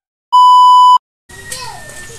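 A single loud electronic beep: one steady high-pitched tone held for under a second, cut off sharply. Faint background noise comes in about a second later.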